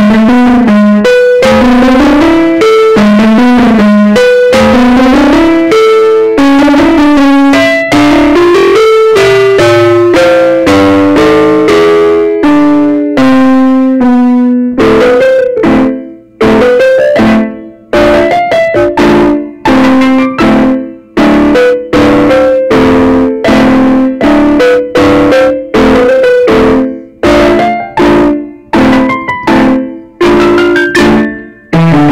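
Solo piano-voiced digital keyboard playing a brisk piece: fast running notes for the first half, then shorter detached notes and chords with brief gaps from about halfway through.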